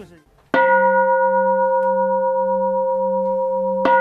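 Large bronze Taoist bowl bell (qing) struck about half a second in, ringing on with a steady low hum and clear bell-like overtones, then struck again just before the end. In Taoist music this strike is the opening cue that leads into the piece.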